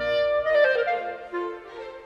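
Solo clarinet playing a quick melodic line of changing notes. It enters as the full orchestra's low, heavy sound stops right at the start. The line grows softer near the end as the phrase closes.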